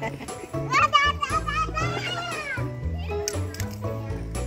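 Background music with a steady bass line, and about a second in a young child's long, high-pitched squeal that rises and falls.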